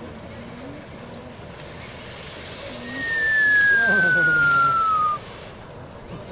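A high whistle sliding steadily down in pitch for about two seconds over a loud rushing hiss, both cutting off suddenly together near the end, with laughter underneath.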